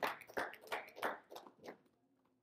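Plastic water bottle being picked up and handled: a string of short crackles and clicks, about three a second, growing fainter and stopping shortly before the end.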